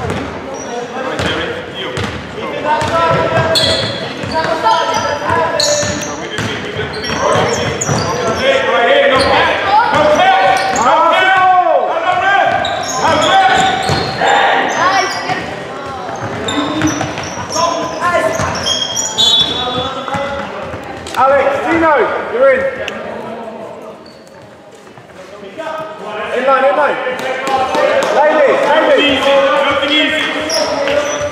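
Basketball game play in a large sports hall: a ball bouncing on the wooden court with sharp impacts throughout, under players' and bench voices calling out. Everything echoes in the hall, and things go briefly quieter a little after the middle.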